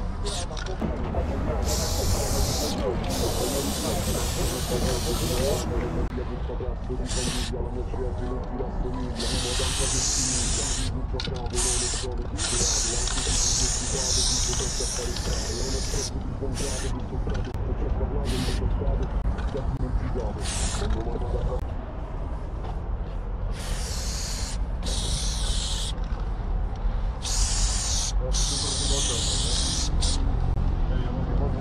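Aerosol spray-paint can hissing in repeated bursts as paint is sprayed onto a wall, some bursts several seconds long and others brief, with short gaps between them.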